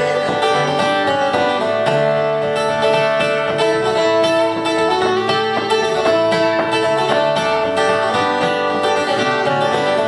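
Instrumental break in a live folk song: strummed acoustic guitar with a second guitar, and a melody line of held notes played over them, with no singing.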